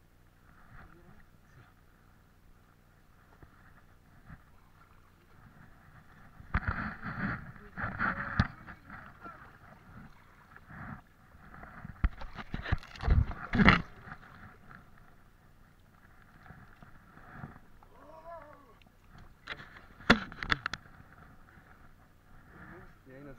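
Scuffing and knocking close to the microphone, in three bursts, the loudest a cluster of sharp knocks about halfway through: a person clambering over wet shoreline rocks with the camera on them. Faint voices come in briefly near the end.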